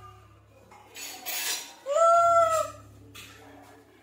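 A rhesus macaque calling: a brief noisy rasp about a second in, then one short, loud, clear-pitched call that rises slightly and falls away.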